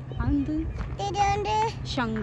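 A young child's high voice in short, held sing-song notes with brief pauses between them, over a low steady hum.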